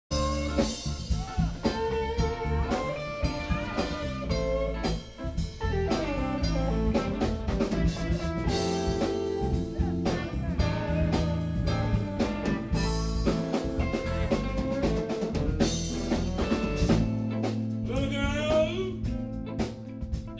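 Live blues band playing a slow minor-key blues, with electric guitars over a drum kit.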